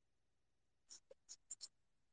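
Near silence, with a quick run of about five faint, sharp clicks about a second in.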